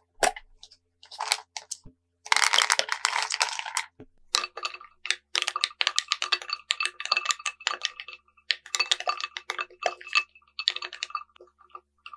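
Quick clicks and clinks of Maltesers and a wooden spoon against a glass bowl of milk. A dense rattling burst comes about two seconds in. Through the second half a rapid run of clinks follows, with a light ringing from the glass.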